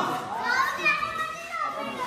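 Children's high-pitched voices calling out while playing.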